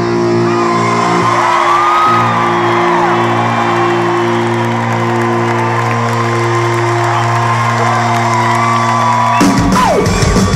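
A live rock band holds a chord that rings out steadily through the arena PA while the crowd cheers and whoops over it. About nine and a half seconds in, the held chord breaks off as a drum hit comes in.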